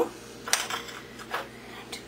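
A metal spoon clinking and scraping against a glass bowl of cream cheese filling: a few short light strikes about half a second in and one more past the middle.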